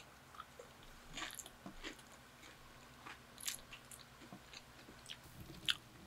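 Close-miked eating sounds: bites into and chewing of a Jollibee Aloha Burger, with a few sharp crisp crunches, the sharpest near the end. A faint steady hum from an electric fan runs underneath.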